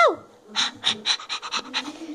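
A child imitating a dog with the voice: the end of a high 'au!' bark, then a quick run of panting puffs made with the mouth, about eight a second.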